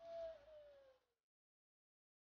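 Near silence, except in the first second, where a faint, drawn-out human voice slides down in pitch and fades out.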